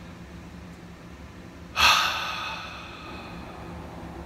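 A man's long breath out, a sigh through the mouth, starting suddenly about two seconds in and fading away over a second and a half, over a faint steady low hum.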